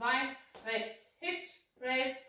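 A woman's voice speaking in short, separate syllables, about two a second, with brief silences between.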